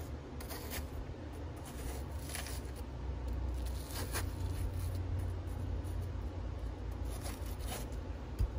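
A knife cutting into the flesh of a halved watermelon: a few faint, short scraping strokes spread over several seconds, over a steady low rumble.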